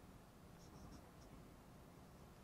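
Faint writing with a dry-erase marker on a whiteboard: a few brief, high squeaks about half a second to a second in, otherwise near silence.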